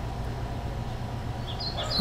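Steady low hum and hiss of background noise. Near the end a few faint, short, high chirps begin.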